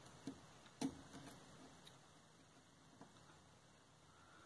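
Near silence broken by a few faint, short ticks, the clearest a little under a second in: test-probe tips clicking against the pins of an inverter board's IPM during a diode measurement.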